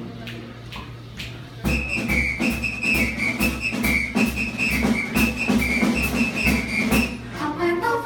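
A high, wavering whistled melody over a steady beat of low thumps and clicks, starting about a second and a half in; singing voices come back in near the end.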